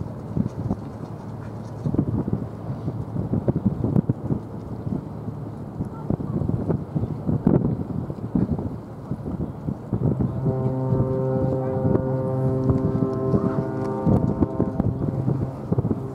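A cruise ship's horn sounds one long, steady, deep blast of about five seconds, starting about ten seconds in, in salute. Wind buffets the microphone throughout.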